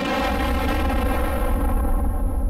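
Cartoon explosion sound effect: a loud, sustained blast with a deep rumble under a steady buzzing tone.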